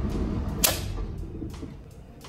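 Main breaker of a residential electrical panel being switched off, a single sharp snap about half a second in, over a low hum that fades away afterwards.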